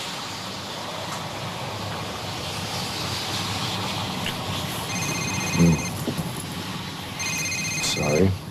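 Mobile phone ringtone: a rapid, pulsing electronic trill rings twice, first past the middle and again near the end, over a steady outdoor background hiss.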